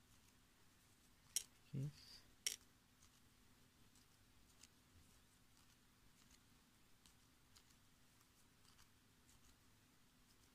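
Near silence, broken by the small sounds of a tatting shuttle and thread being worked by hand. There are two sharp clicks, a little over a second in and about two and a half seconds in, then only faint light ticks.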